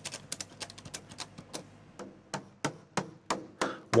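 Light, irregular clicks and taps, several a second, from the polyethylene band muff and its strap being handled and pressed into place on the plastic outer casing of a pre-insulated pipe.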